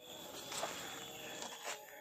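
Quiet outdoor background on an open fairway: a steady low hiss with a faint high, steady tone, and a couple of soft ticks about half a second in and near the end.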